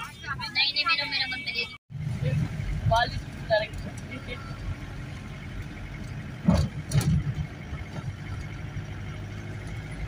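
Car driving on a mountain road, heard from inside the vehicle: a steady low engine and road rumble, with two knocks about six and a half and seven seconds in.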